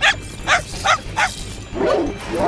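Cartoon dog barking four short times, about one bark every 0.4 s, followed near the end by a longer, different call.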